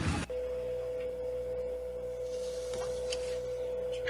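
A noisy sound cuts off abruptly just after the start, and a steady electronic tone at one pitch sets in and holds without change.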